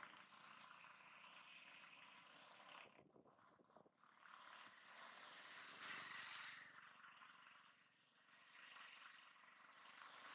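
Near silence: faint outdoor background hiss with a few short, high chirps scattered through it.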